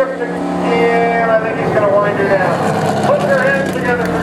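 NASCAR Canadian Tire Series stock car's V8 engine running at speed around an oval track, its note holding steady, with a voice talking over it.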